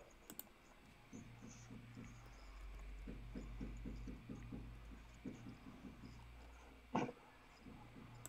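Faint, rapid typing on a computer keyboard in quick runs of keystrokes, with one sharper, louder click near the end.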